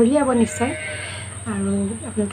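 A woman talking, with a short breathy pause about half a second in before she speaks again.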